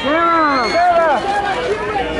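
Red-carpet photographers shouting a name over and over, several voices overlapping, each call rising and then falling in pitch, over crowd chatter.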